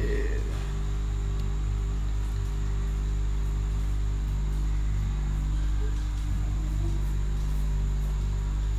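A steady low machine hum at one constant pitch, running evenly with no change.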